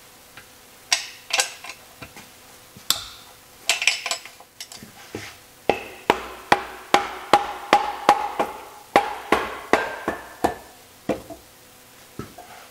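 Sharp metallic clicks of a ratcheting wrench loosening the 8 mm case nuts on a Porsche 915 transaxle. They come irregularly at first, then in a steady run of about two or three a second through the middle, with a slight metallic ring.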